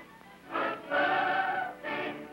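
Church choir singing a hymn, held notes in sung phrases.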